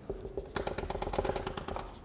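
Dry-erase marker on a whiteboard drawing a dashed line: a quick run of short marker strokes, several a second, starting about half a second in.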